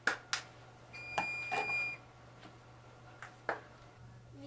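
Plastic spice bottles clicking and knocking as they are handled, capped and set down: two sharp clicks at the start, more in the middle, and two near the end. A steady high beep-like tone sounds for about a second partway through.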